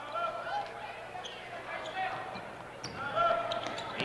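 Basketball game sounds in a gym: a ball being dribbled on the hardwood floor and several short, high sneaker squeaks, over a steady background of crowd noise.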